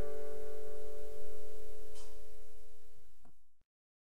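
The last held piano chord of a song, ringing on and slowly fading away until the sound stops shortly before the end.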